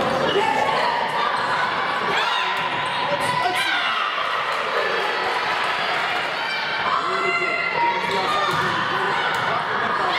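Indoor volleyball play: the ball being hit and bouncing on the court amid many voices of players and spectators calling and talking in a gym hall.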